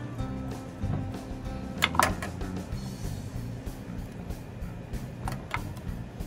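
Background music with low held notes, over which kitchen shears snip sharply through a roasted chicken wing: one loud crack about two seconds in and two quicker snips near the end.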